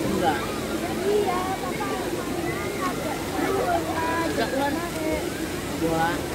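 Mostly speech: scattered voices of people talking at a pool over a steady rushing background noise.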